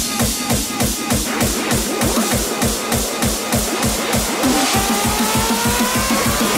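Hard dance electronic music (hardstyle/hardcore): a fast, even kick drum at about five beats a second, with a synth tone rising from about four and a half seconds in.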